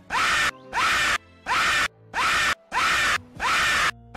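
A screaming sample cut into a stuttering loop: the same loud scream repeats about six times, roughly one every two-thirds of a second, each with a quick rising pitch at its start and abrupt cut-offs between.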